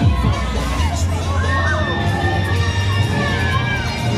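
Riders screaming on a spinning fairground thrill ride, several voices overlapping, with one long high scream held from just before halfway to near the end. A steady heavy bass from the ride's music runs underneath.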